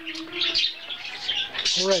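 Small birds chirping continually in quick, high-pitched twitters.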